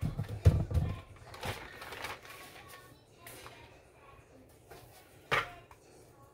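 Metal tortilla press being worked: a plastic sheet rustles as it is peeled off a pressed masa disc, with dull thuds in the first second and one sharp knock near the end.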